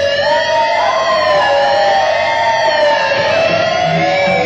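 Distorted electric guitars holding long sustained notes with wide vibrato and bends, one line weaving above the other; the lower note slides down near the end.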